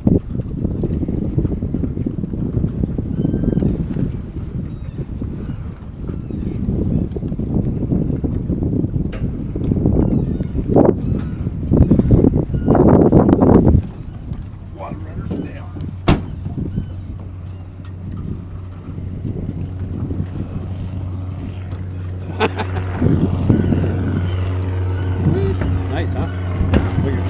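Wind rumbling on the microphone for the first half, gusting hardest just past halfway; then, from a little past halfway, a steady low engine hum joins in and holds on.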